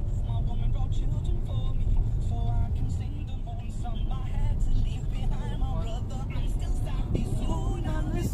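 Inside a moving car: the steady low rumble of engine and road noise, with music and singing playing over it.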